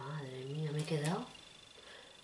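A woman's long drawn-out vocal sound, one held note for about a second and a half that rises in pitch at its end and cuts off, followed by quiet room tone.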